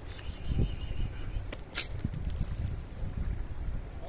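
Wind rumbling on the microphone, with a few sharp crunches in the middle as cats chew dry kibble from a plate.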